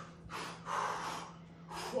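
Hard breathing from a person tiring near the end of a plank set: three breaths in quick succession, each a short rush of air.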